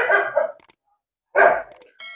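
A dog barking twice, about a second and a half apart.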